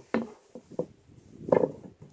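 A few short handling knocks as a fiberboard lid is settled on a metal pot and a cordless drill's bit is pushed through its centre hole. The loudest knock comes about one and a half seconds in.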